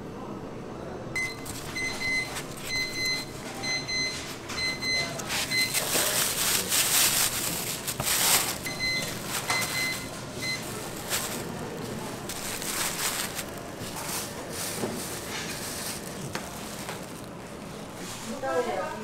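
An electronic appliance beeping a series of short steady beeps, about two a second, pausing midway and then beeping three more times, over the crinkling rustle of plastic bags of rice cakes being handled.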